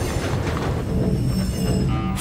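Film sound effect of a diesel locomotive rolling in: a steady low rumble, with a thin, high metallic wheel squeal in the second half as it draws up.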